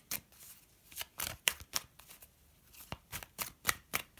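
A tarot deck being shuffled overhand by hand: an irregular series of short, sharp card snaps, several a second, with a brief lull around the middle.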